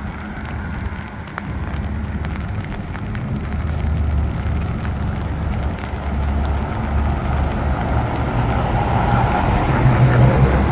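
Street traffic on wet asphalt: car tyres hissing past with low engine rumble, a vehicle getting louder toward the end as it approaches.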